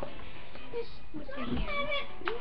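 A high-pitched wordless call with a wavering, gliding pitch, starting about a second and a half in.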